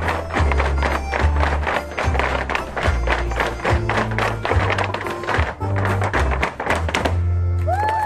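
Irish dance hard shoes striking a stage floor in fast, dense heavy-jig rhythms over recorded jig music. The stepping stops about seven seconds in while the music holds a final low note.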